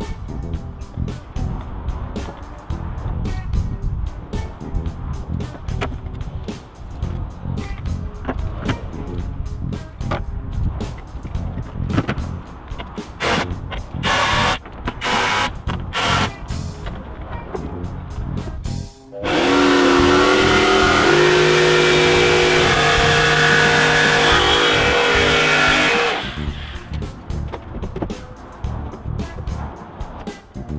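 Background music with a steady beat. Past the middle the music drops out for about seven seconds of a loud electric power tool motor running steadily, then the music returns.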